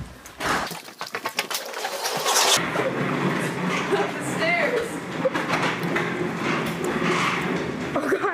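A quick run of clattering knocks, then from about two and a half seconds in a steady low rumble of office-chair casters rolling over a concrete walkway.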